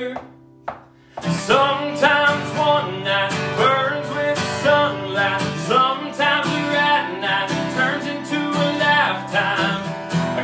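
Acoustic guitar strummed with a man singing over it. The music stops almost silent for about a second at the start, then the strumming and singing come back in.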